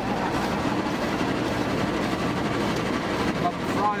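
Automatic car wash running over a car, heard from inside the cabin: a steady rushing wash of water spray and machinery on the body.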